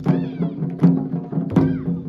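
Taiko drums struck in a steady beat, about four hits in two seconds, over a sustained low backing-music drone, with high sliding calls after some of the strikes.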